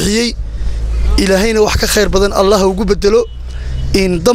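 A man talking into a handheld microphone in drawn-out phrases, with a low rumble underneath that is loudest during a pause about half a second to a second in.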